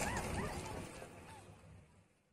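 Faint outdoor background noise fading away to silence, with several short, arched yelping calls from an animal in the first second and a half.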